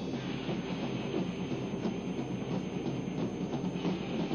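Dense, steady rumbling and clattering noise from a live band's performance, with no clear beat or melody.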